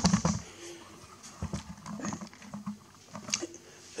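Light knocks and clicks of hands handling the metal chassis of an HP 3495A scanner: a cluster of knocks right at the start, then a few scattered faint taps.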